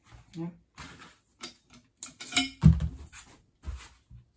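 Metal rifle parts, a chassis and a barreled action, being handled and set down on a padded mat: a few light metallic clicks and clinks, then a dull thump about two and a half seconds in and a softer one near the end.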